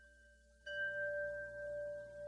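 Sustained bell-like chime tones, faint at first, with a new chord struck about two-thirds of a second in that rings on and holds steady.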